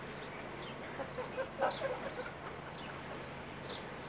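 Small birds chirping in short, high, falling calls, several a second, with a louder, lower call about a second and a half in.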